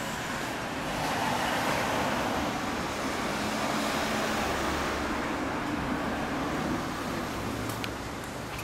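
A road vehicle passing on the street: its tyre and engine noise swells about a second in and fades away near the end.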